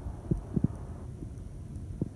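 A man drinking from a glass of beer: a few short gulps close to the microphone about half a second in, over a low wind rumble on the microphone.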